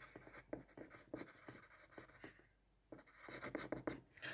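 Pen writing on paper: faint, short scratching strokes, with a brief pause a little past the middle before the writing picks up again.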